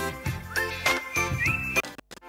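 Short TV station ident jingle: chiming synth notes over a bass line and a regular beat, with a couple of short rising pitch glides. It breaks off abruptly at the end.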